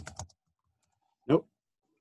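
A few quick keystrokes on a computer keyboard at the start, then a single spoken "nope" about a second in.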